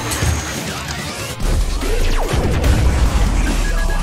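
Animated battle sound effects for a tank-cannon attack: a crash and booms with a falling whoosh, then a deep rumble that swells from about a second and a half in. Background music runs under it.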